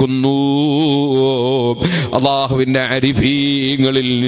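A man's voice chanting in long, drawn-out notes that waver slowly in pitch, breaking briefly about two seconds in, in the melodic sing-song style of an Islamic preacher's recitation. A steady low hum runs underneath.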